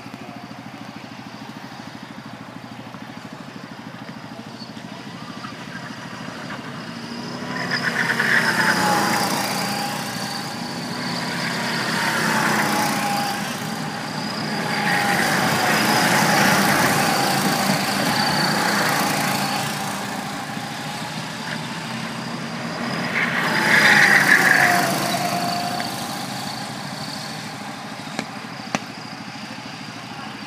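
Go-kart engines running as karts lap the track. The sound swells and fades in several pass-bys, the pitch falling as each kart goes past, with the loudest passes about eight and twenty-four seconds in.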